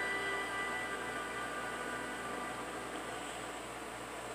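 The last held notes of the film's closing music, played through a TV speaker, die away in about the first second. A steady hiss and room noise remain after that.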